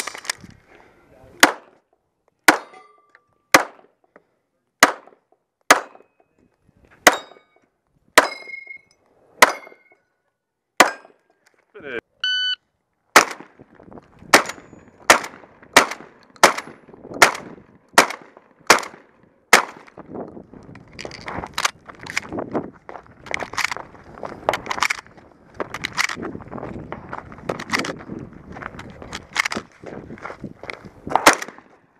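Gunfire at a 3-gun match: single pistol shots about a second apart, several followed by the ring of struck steel targets. About twelve seconds in, a short electronic beep from the shot timer, then rapid shotgun fire, close to two shots a second, with steady noise between the shots in the last ten seconds.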